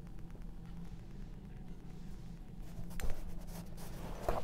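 Quiet handling of painting tools off the canvas: a sharp tap about three seconds in, then a short scratchy scrape, over a steady low hum.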